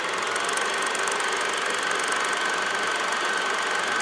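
Vintage film projector sound effect: a steady mechanical whirring clatter with a faint high whine.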